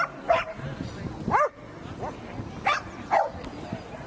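A dog barking several short times, with pauses between barks.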